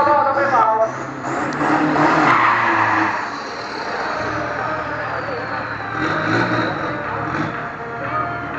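Pickup truck revving hard with its tyres spinning in a burnout. A loud rush of tyre noise builds about a second in and eases after about three seconds, then the engine runs on more quietly.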